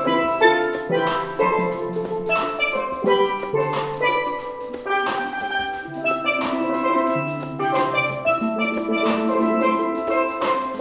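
Steel pan ensemble playing an instrumental passage: several pans ringing out melody and chords over a low bass line, with a steady beat.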